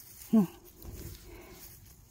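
A woman's brief wordless vocal sound, one short falling-pitched 'oh', followed by a faint rustle of her hand in dry grass while picking mushrooms.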